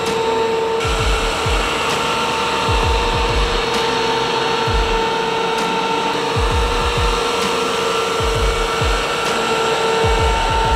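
Wood-Mizer MB200 Slabmizer flattening a eucalyptus slab: its spindle motor and cutter run with a steady whine over the hum of the dust-collection vacuum.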